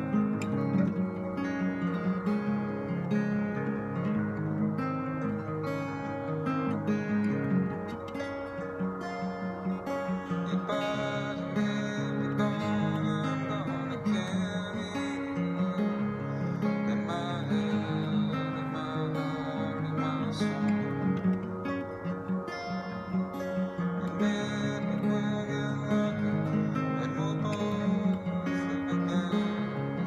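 Acoustic guitar in open tuning a half step below open D, playing the chords of a song continuously with notes ringing into each other.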